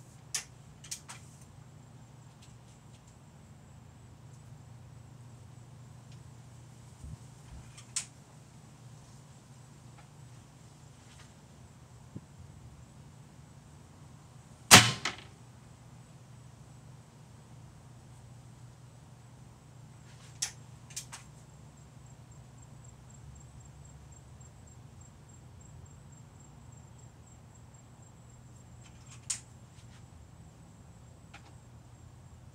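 A single sharp airgun shot about halfway through, a Beeman pointed pellet fired into a thin aluminium car A/C condenser, with a short tail after the crack. A few faint clicks come before and after it, over a steady low hum.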